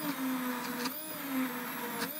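Hand-held immersion blender running in a pot of boiled tomatoes and vegetables, puréeing them into soup. The motor's pitch dips and recovers a few times as the blade meets the mash.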